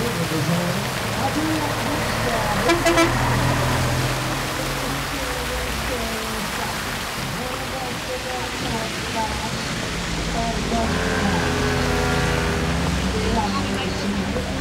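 Street ambience of traffic and people's voices, with a held pitched tone lasting a couple of seconds near the end.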